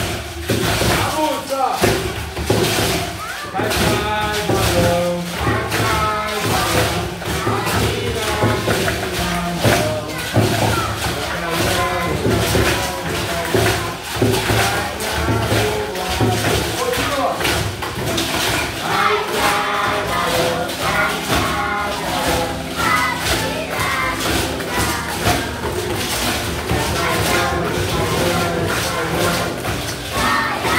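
Acoustic guitar strumming a song while a classroom of children shake homemade bean-filled bottle shakers along to the beat, a dense rattling rhythm throughout, with children's voices over it.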